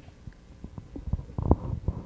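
Handling noise on a handheld microphone: a run of irregular low thumps and rumbles, sparse at first and denser in the second half.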